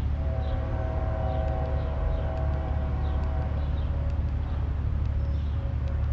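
A long, steady horn blast sounding several pitches at once for about three and a half seconds, then fading to a faint single tone, over a continuous low rumble of traffic and wind.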